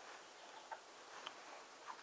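Very quiet room tone with three faint, soft clicks, spaced unevenly about half a second apart.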